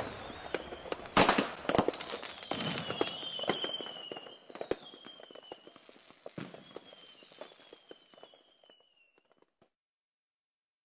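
Fireworks going off: a loud bang about a second in, then many crackles and pops, with a thin high whistle sliding slowly downward. It fades away toward the end.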